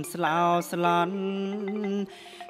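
A male voice chanting Khmer verse in a sung, melodic recitation, over a steady held drone and roneat ek (Khmer xylophone) accompaniment.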